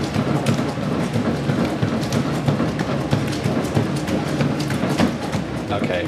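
Motorized treadmill running near 15 km/h: a steady motor and belt hum with a runner's footfalls striking the belt about twice a second.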